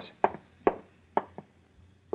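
Radio-drama sound-effect footsteps: four short, sharp, hard steps at uneven spacing.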